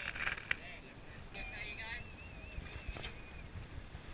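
Wind and water noise aboard a 12 Metre sailing yacht under way, with brief voices at the start and a faint warbling, whistle-like tone through the middle.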